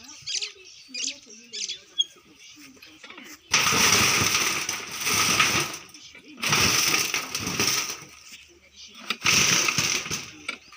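Metal shovel scraping and digging into soil, three long rasping strokes in the second half.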